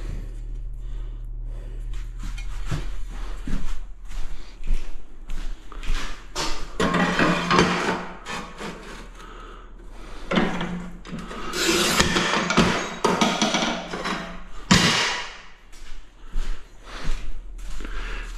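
A ceramic wall tile being handled and cut on a manual tile cutter: scraping and knocks of tile and tool in two longer stretches, then a single sharp crack near the end.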